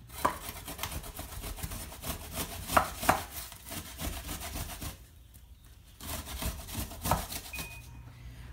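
Granny Smith apple being grated on a metal box grater standing in a metal pan: a repeated rasping scrape, stroke after stroke, with a short pause about five seconds in.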